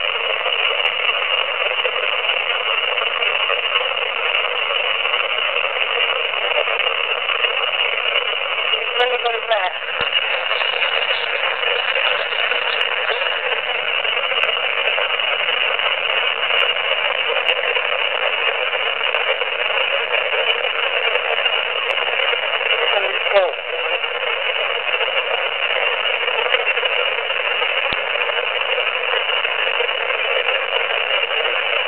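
AM radio static played back through a small voice recorder's speaker: a steady, thin, tinny hiss. A brief voice-like warble breaks through about nine seconds in and again around twenty-three seconds.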